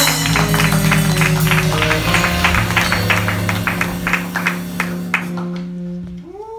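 A jazz band's final chord held and ringing out on steady bass and keyboard notes, with close hand claps about four a second over it that stop about five seconds in.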